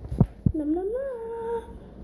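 A girl hums a single note that slides upward and holds for about a second, just after two short knocks near the start.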